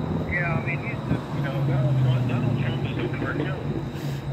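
A steady low motor hum, strongest in the middle, with faint muffled speech over it.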